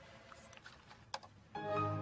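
A few keyboard clicks, then, about one and a half seconds in, a computer's chime starts with several steady notes at once, the loudest thing here: the computer sound that has been paired with the offer of an Altoid.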